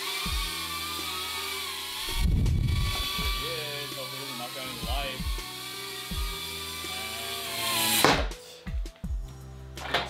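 Cinewhoop FPV drone flying close by: a buzzing propeller whine that rises and falls in pitch with the throttle, with a louder swell about two seconds in. It cuts off suddenly near the end as the motors stop.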